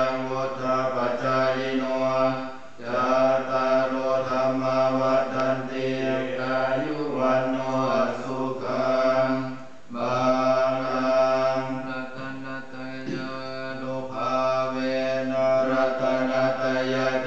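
Buddhist monks chanting a Pali blessing in unison on a low, steady monotone. There are short breaks for breath about three seconds in and again about ten seconds in.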